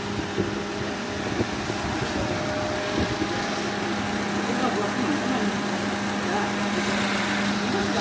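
Perodua Myvi engine idling steadily with the air-conditioning compressor running while the system is charged with R134a. A steady low hum joins in a few seconds in.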